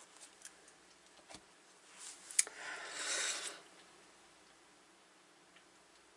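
Cards being handled on a table: a few faint ticks, then about two seconds in a soft rustle lasting just over a second, with one sharp click near its start.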